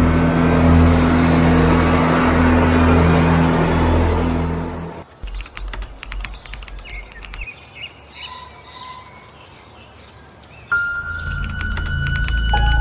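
Low, steady droning horror-style music for about the first five seconds. It cuts suddenly to birds chirping with scattered faint clicks. Near the end a steady high electronic tone comes in.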